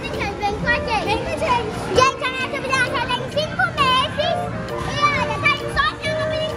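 Children's excited, high-pitched voices calling out and playing, over continuous music.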